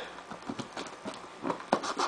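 A small folding knife blade cutting along the taped seam of a cardboard box, a run of short, irregular scratches and clicks, with a louder click a little before the end.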